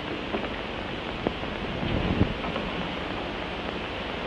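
Steady hiss of an old television soundtrack, with a faint click about a second in and a few soft low knocks around two seconds.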